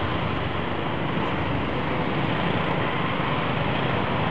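Steady riding noise of a motorcycle moving slowly through city traffic: the engine running with road and wind noise, even and unbroken throughout.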